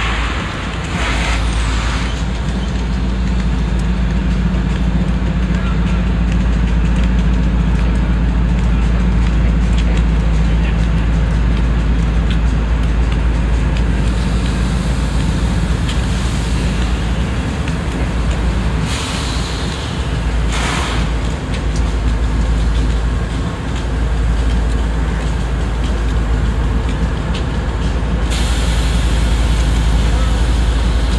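Union Pacific diesel locomotives leading a heavy freight work train at slow speed, with a steady deep engine rumble. Short bursts of hiss come about a second in and twice around twenty seconds in, and high-pitched noise rises near the end as the locomotives draw closer.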